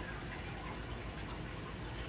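Steady low background noise: a faint, even hiss with no distinct events.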